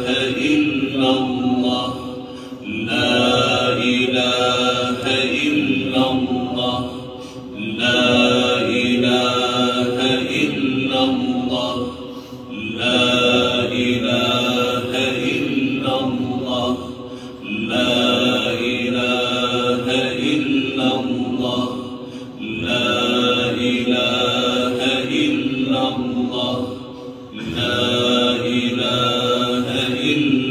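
Melodic Islamic chanting of the dhikr litany that follows the dawn prayer, sung in long, drawn-out phrases of about five seconds with short pauses between them.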